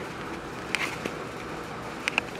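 Steady background hiss with two faint clicks, about three-quarters of a second and a second in.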